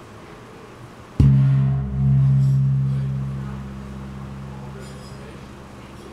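A large hand-made 27-inch brass bossed gong (tawak) struck once in the middle, about a second in. It rings with a deep, low hum that swells again shortly after the strike and then slowly dies away.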